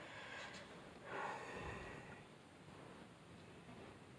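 Faint breathing close to the microphone: a short breath at the start, then a longer breath out about a second in.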